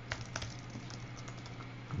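A few computer keyboard keystrokes, typing, in the first half second, then a faint steady low hum.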